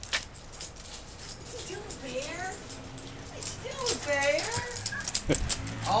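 Miniature schnauzer puppies at play: a few short, bending whines about two seconds in and again about four seconds in, among rapid clicks and jingling from their collar tags.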